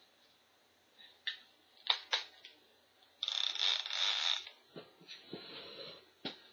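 Craft supplies being handled on a tabletop: a few sharp clicks and knocks, then about a second of scratchy noise, the loudest part, followed by softer knocks.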